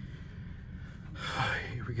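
A man's breathy gasp about a second in, running straight into speech, over a low steady background hum.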